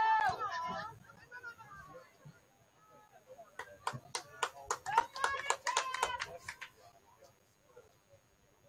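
High-pitched shouting voices on a soccer pitch: one loud shout at the start, then a burst of several shouts from about three and a half to six and a half seconds in, mixed with a rapid run of sharp clicks.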